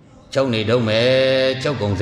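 A Buddhist monk's voice drawing out a word on one steady pitch in a chant-like tone, starting about a third of a second in, then breaking into a few quick spoken syllables near the end.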